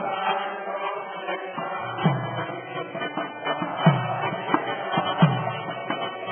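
Devotional chanting accompanied by a hand drum, whose deep strokes fall a little in pitch as they die away.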